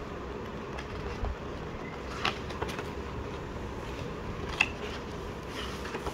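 Pages of a glossy photobook being turned by hand: a few short paper rustles and flicks, the sharpest a little past the middle, over a steady background hiss.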